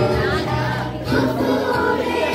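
A group of girls singing a song together in chorus, with held, gliding notes.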